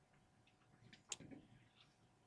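Near silence: room tone, broken by one faint short click about a second in, with a couple of softer small sounds just after it.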